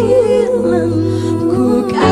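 Women singing a slow worship song into microphones over sustained electronic keyboard chords and bass, the voices holding long notes with vibrato.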